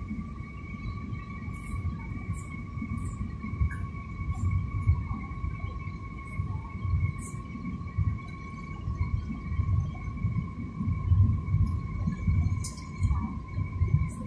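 Jet airliner cabin noise heard from a window seat during descent: a low, uneven rumble of the engines and the airflow over the fuselage, with a steady whine running through it. A few faint high ticks come and go.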